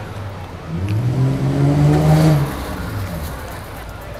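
A motor vehicle's engine passing close by on the street: its hum climbs in pitch and level about a second in, is loudest around two seconds, then drops and fades.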